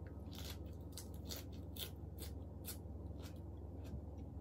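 Close-up chewing of a mouthful of crisp fresh lettuce wrapped around stir-fried pork: a run of sharp, crisp crunches, about two or three a second, that stop shortly before the end.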